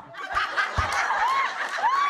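Audience laughing together, a sustained crowd laugh, with a couple of single high laughs standing out about halfway and near the end.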